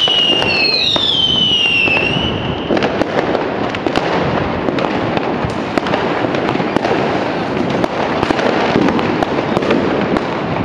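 Street fireworks: two whistling rockets, each whistle falling in pitch, over the first two and a half seconds. Behind them and throughout is a dense barrage of firecracker bangs and crackling.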